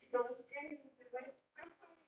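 Speech only: a voice talking in short phrases, with brief pauses between them.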